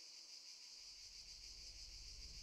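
Faint, steady high-pitched chirring of crickets. A low hum fades in underneath less than halfway through.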